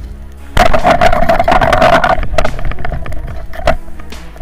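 Background music over a speargun fired underwater: a sudden loud burst of water noise about half a second in, churning for about a second and a half, then fading into a few sharp clicks.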